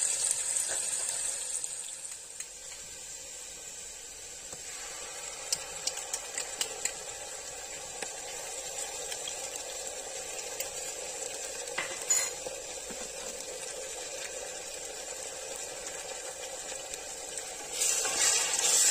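Chopped onions and green chillies sizzling in hot oil in a pressure cooker, a little louder in the first couple of seconds. A few light clicks of a utensil against the pot, a cluster a third of the way in and another about two-thirds through.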